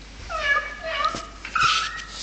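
Yorkshire terrier whimpering and yipping: three short, high-pitched cries, the first two falling in pitch and the last, near the end, the loudest.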